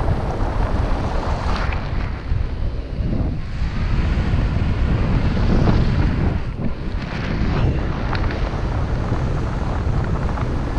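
Airflow buffeting the camera microphone in flight under a tandem paraglider: a steady rough rushing rumble that swells somewhat around the middle.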